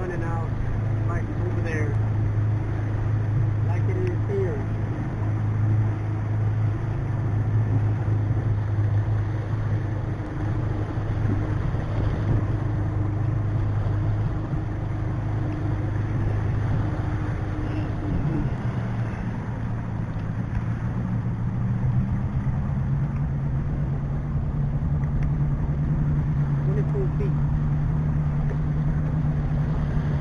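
A boat's outboard engine running steadily under way, with a constant low drone and wind and water noise over it. About two-thirds of the way through, the engine note steps up to a higher pitch and holds there.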